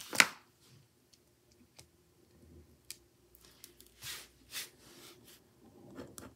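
Gel pens handled on a tabletop: a sharp click near the start, then faint taps and rustles, and two short scratchy strokes about four seconds in as a gel pen starts writing on a paper label.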